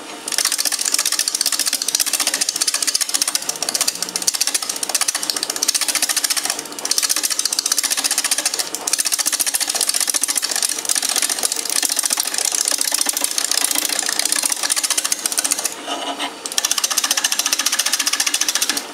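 A turning tool cutting a spinning bowl blank on a wood lathe: a steady, rapid chatter of the edge on the wood, mostly high in pitch. It breaks off briefly a few times, about seven and nine seconds in and again near sixteen seconds, as the cut lifts off the wood.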